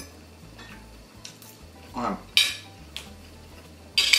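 A metal fork clinking and scraping on a plate a few times, with the loudest scrape a little past halfway.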